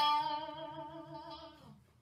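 A single note picked on a Stratocaster-style electric guitar and held with a fast vibrato, its pitch wavering quickly, dying away after about a second and a half.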